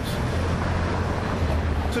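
Steady low rumble of outdoor background noise, with no speech over it.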